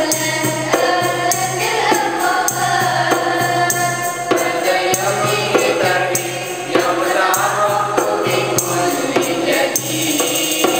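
A group of young voices singing a song together, accompanied by regular frame-drum beats.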